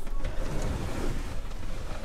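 A camper-van bed frame sliding out on weight-loaded linear sliding rails, making a steady, even sliding rush as it is pulled out.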